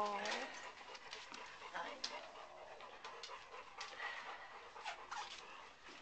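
Faint, scattered squeaks from two-week-old puppies, with soft clicks and rustling from handling and bedding.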